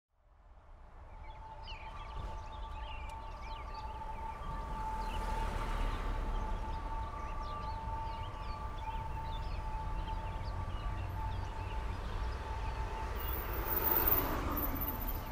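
Downtown street ambience fading in: a low traffic rumble with birds chirping. A steady high two-note tone is held for about nine seconds, then fades.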